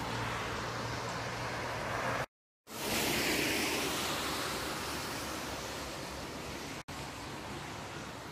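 Street traffic noise: a steady hiss of tyres on wet asphalt. It breaks off in a brief silent gap about two seconds in, then swells again and slowly fades.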